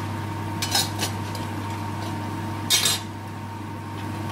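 Metal utensil clinking against a metal cooking pan twice, once about a second in and again near three seconds, as spice powders are added to onions in the pan, over a steady low hum.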